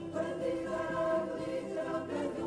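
Music with a choir singing held notes.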